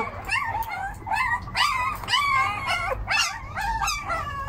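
Very young puppies whining and yelping in short, high, wavering cries, about two a second: hungry pups crying at feeding time.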